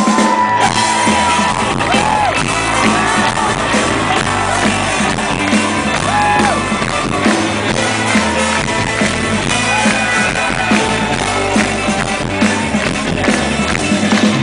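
Live rock band playing: drums, electric guitars and a horn section, with shouts and whoops from the crowd, heard from within the audience.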